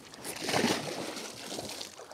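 Water splashing and sloshing as a large catfish slips from the hands over the side of a kayak into the water, loudest about half a second in and then trailing off.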